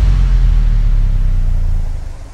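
Deep, loud bass rumble from an outro logo sting's sound effect, holding steady and starting to fade near the end.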